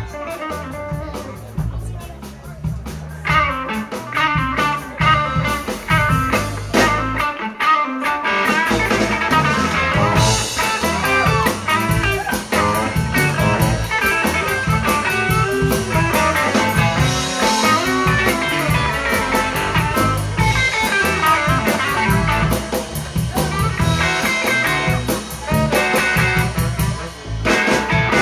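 Live blues band playing an up-tempo number: electric guitar, saxophone, bass and drums. The bass and drums drop out briefly about eight seconds in, then the full band comes back in louder, with cymbals.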